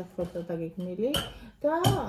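A woman talking with animated speech, broken by two short sharp clicks, one a little after a second in and one near the end.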